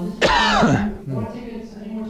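A man coughing once into a handheld microphone, a short harsh cough that clears his throat, about a quarter second in.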